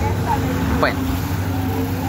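Street traffic: a motor vehicle engine running with a steady low hum under a brief word of speech.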